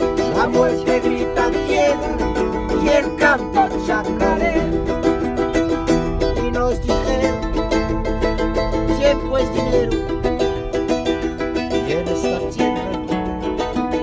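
Acoustic plucked-string instrument strummed in a steady, driving rhythm, an instrumental passage between sung lines of a live performance.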